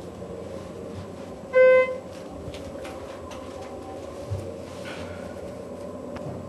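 A single electronic beep, about half a second long, from the Schindler elevator's signal, over the steady hum of the elevator car. A soft low thump comes about four seconds in.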